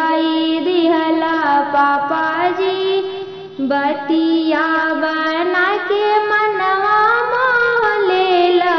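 A woman singing a Bhojpuri kanyadan wedding song in long, sliding held notes, with musical accompaniment; the line breaks off briefly about three and a half seconds in, then carries on.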